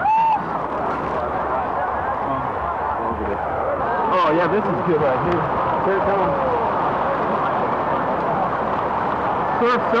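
Indistinct voices of people calling out, over a steady rush of surf and outdoor noise, with a short loud shout right at the start.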